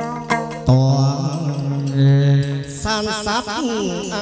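Hát văn (chầu văn) ritual music: a few plucked notes of the moon lute (đàn nguyệt), then a singer holding one long low note that breaks into a wavering melisma sliding downward near the end.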